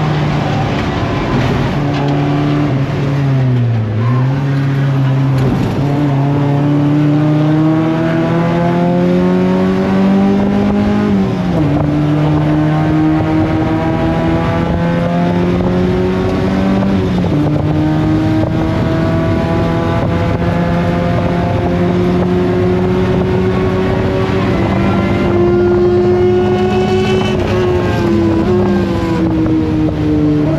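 Mazda Miata race car's four-cylinder engine heard from inside the cockpit, running hard on track. Its pitch dips about four seconds in as the car slows, then climbs steadily through the gears, falling sharply twice at upshifts, and drops again near the end.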